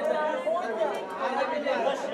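Background chatter of several people talking over one another in a large hall, with no single voice standing out.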